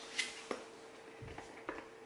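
Scissors and a small cardboard box being handled: a few faint, separate clicks and a soft thump, over a faint steady hum.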